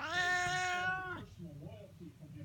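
Domestic cat meowing once: a single drawn-out meow of about a second, held at a steady pitch, that falls away at the end.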